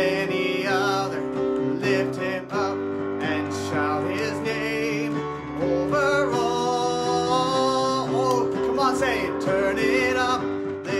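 Worship song played on an electronic keyboard: steady held chords with a wavering melody line over them, likely the player's singing voice, with long held notes about six to eight seconds in.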